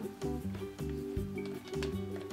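Background music: a light tune over a bass line of short notes that changes pitch about every half second.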